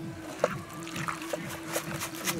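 Fish pieces being turned by hand in spice paste in a metal pan: wet squelching with a few small knocks of fish against the pan, the loudest about half a second in. A steady low tone runs underneath.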